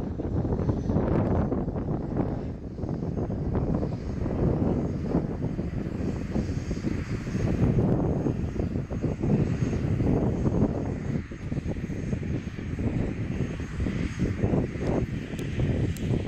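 Softex V-24 light aircraft flying overhead and away, its propeller engine droning under a wavering, noisy rumble.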